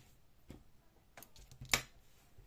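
Scissors being handled right after trimming a yarn tail: a few short clicks, the loudest about three-quarters of the way in.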